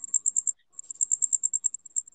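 High-pitched rhythmic chirping, about ten short pulses a second, with a brief break about half a second in.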